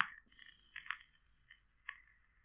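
Faint sizzle and crackle of an e-cigarette atomizer coil firing during a long draw, with a thin hiss of air through the airflow and a few sharper pops at the start, about a second in and near the end.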